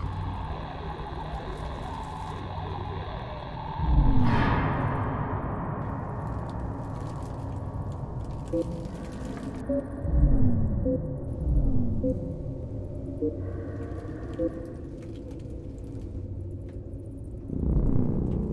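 Dark ambient horror score: a steady low drone, a deep hit with a falling sweep about four seconds in, and more falling low swoops around ten to twelve seconds, over a faint tick about every second.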